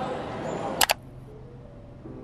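Airport terminal hubbub with voices, cut off a little under a second in by a quick double camera-shutter click; soft piano music begins after it.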